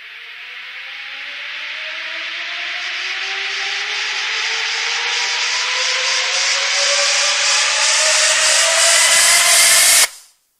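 Hard psytrance build-up: a white-noise riser with synth tones gliding steadily upward, growing louder throughout with no kick or bass. It cuts off suddenly at the end.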